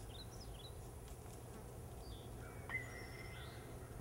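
Faint outdoor ambience of small birds chirping in short falling calls, over a steady high insect drone and a low rumble. A single click comes about two-thirds of the way in, followed by a brief held whistling call.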